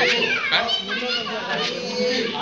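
Children's voices shouting and chattering over a crowd's talk, with a high, sliding shout right at the start.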